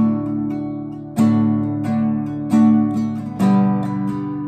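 Nylon-string classical guitar strummed in a down, down, up, up pattern, with a strong stroke about every second and lighter strokes between.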